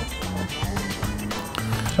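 Background music with sustained low notes; the oil being poured makes no sound that stands out above it.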